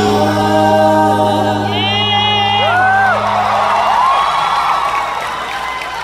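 Live band and two singers holding a long sustained closing chord, with a high wavering vocal note about two seconds in; the music stops about four seconds in and the crowd cheers and screams.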